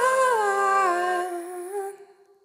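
Final held notes of a live band's song: a hummed-sounding vocal line over a low steady drone. The notes slide down together about half a second in, the drone stops just after a second, and the sound fades and cuts off near the end.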